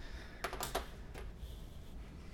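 A quick run of four or so light clicks about half a second in, then one more a little after, from keys being pressed on a computer keyboard, over a faint low room hum.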